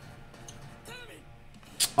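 Faint anime episode audio: quiet background music and a brief, distant-sounding voice line, with a short click near the end.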